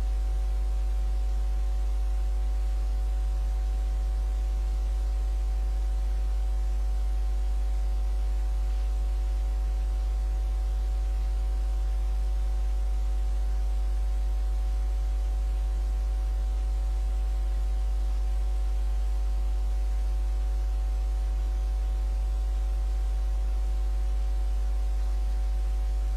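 Steady electrical hum: a strong low drone with several fainter steady higher tones above it, unchanging throughout, over faint hiss.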